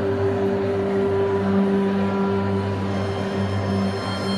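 Live band playing an instrumental passage of steady, held low notes, with no singing.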